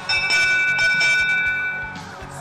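Electronic match-timer tone marking the end of the autonomous period: a loud, steady chord of several high pitches held for almost two seconds, then cut off.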